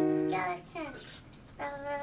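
Piano chord held and fading, with a child singing along; the voice slides in pitch about halfway through and a new note sounds near the end.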